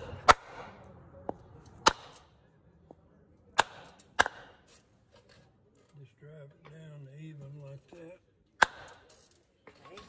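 Several sharp, separate knocks of a cedar wood block against a greased wheel hub as its grease seal is seated, spaced unevenly a second or more apart. A low voice murmurs for about two seconds past the middle.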